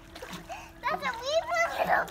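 Water splashing in a swimming pool as two young girls clamber onto a foam pool float. From about a second in, a child's high-pitched voice calls out without clear words, and a louder splash comes near the end.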